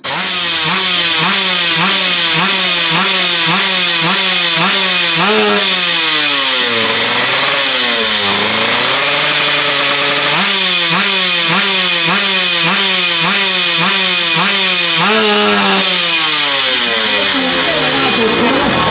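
Drag-racing motorcycle engine on a stand being revved again and again, its pitch climbing and dropping about twice a second. Around the middle it is swept slowly down and back up, then the quick blips of the throttle resume.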